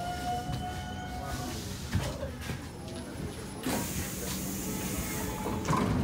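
Stockholm C14 metro car at a station stop: a steady whine in the first second and a half, then a hiss that starts about two thirds of the way in and runs on, as the sliding doors are in use. A few knocks near the end.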